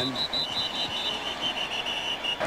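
A rapid run of short, high-pitched beeps, about seven a second, over steady stadium crowd noise. A higher run of beeps stops within the first second, overlapping a slightly lower run that goes on until just before the end.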